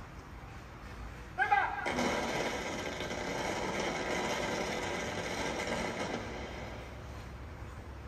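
A shouted parade word of command, then a feu de joie: a dense running crackle of ceremonial rifle blanks rippling along the ranks for about five seconds, played through a television.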